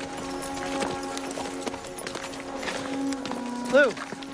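Horse hooves clopping slowly on a dirt path over a film score of long held notes; near the end a man shouts "Lou!", the loudest sound.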